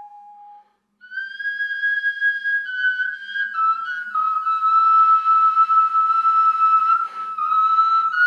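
Background music: after a brief gap, a single high, whistle-like note begins about a second in. It is held for the rest of the time and steps slightly down in pitch once or twice.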